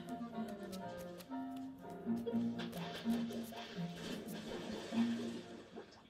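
Background music: a simple tune of held low notes with light percussion ticking along, cutting out just before the end.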